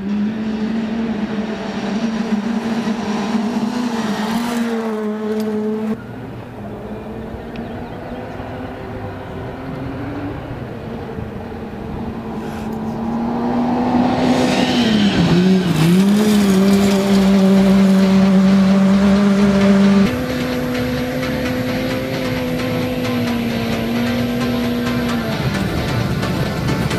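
Ford Fiesta R2 rally car's engine held at high revs on a gravel stage, a steady note that dips briefly and recovers about fifteen seconds in as the driver lifts off and gets back on the throttle. It grows louder as the car approaches.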